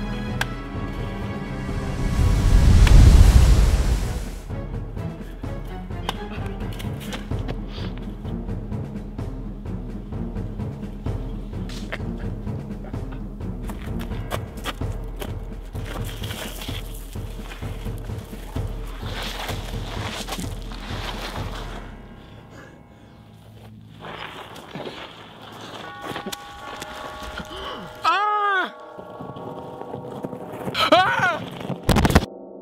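Background music score with a steady beat, opening with a deep boom about two seconds in; the music thins out after about twenty-two seconds, with ringing tones near the end.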